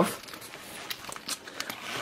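Rustling and a few faint clicks as the silver padded carrying bag of a portable VHS recorder is handled at its side pouch.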